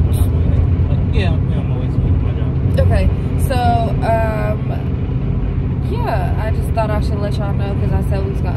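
Steady road and engine rumble inside the cabin of a car driving at highway speed. A voice talks over it briefly around the middle and again near the end.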